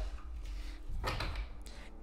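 A deck of oracle cards being picked up and handled on a table, with a brief soft sliding rustle of the cards about a second in.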